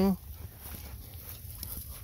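Faint rustling and soft steps of a golden retriever moving through wet mud and dry grass, over a low steady rumble of wind on the microphone.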